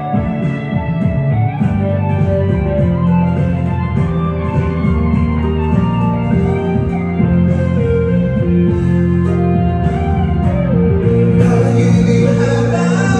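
Instrumental break of a pop ballad backing track, with a guitar-like lead line over a steady beat. Singing comes back in near the end.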